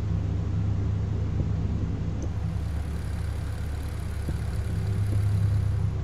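A steady low droning hum that holds level, with no distinct knocks or other events.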